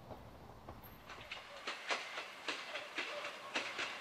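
Wind rumble on the microphone, then from about a second in an approaching railcar: irregular sharp clicks of its wheels over the rail joints, several a second.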